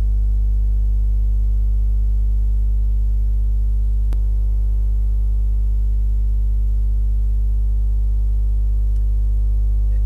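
Loud, steady low electrical hum with a stack of even overtones, like mains hum in the recording. A single faint click comes about four seconds in.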